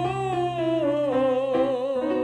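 Male falsetto voice singing a descending scale with vibrato, the vocal folds slightly drawn together for the soft, focused 'voce di lontano' (distant voice) tone, over a held piano chord.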